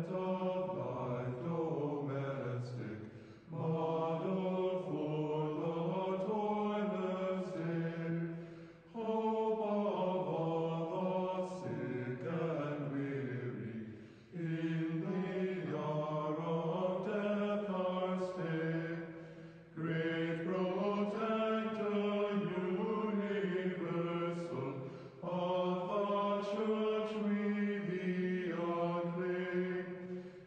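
A man chanting a Byzantine Orthodox hymn in long sung phrases about five seconds each, with a brief break between phrases.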